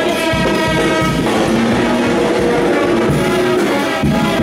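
High school band playing live, with long held notes that shift to a new chord about a second in.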